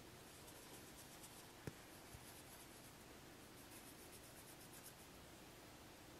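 Near silence with faint scratchy rubbing of fingertips swiping across pressed eyeshadow pans, and one small click about a second and a half in.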